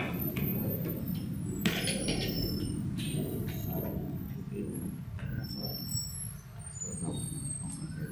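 Steady low rumble of street traffic, with one sharp tap a little under two seconds in.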